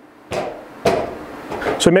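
Two sharp knocks about half a second apart, the second louder and ringing on briefly in a small room.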